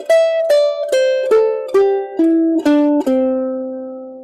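Ukulele playing a C major scale downward, one plucked note about every half second, ending on the low C, which rings out for about a second.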